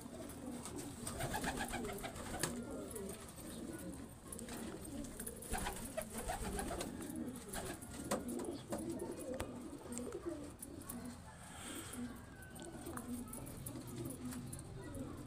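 Racing pigeons cooing on and off, with a few sharp clicks now and then.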